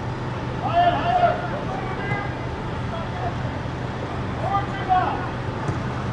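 Men's voices shouting across an outdoor soccer field, two short bursts of calls, about a second in and again near five seconds. Under them runs a steady low hum and outdoor background noise.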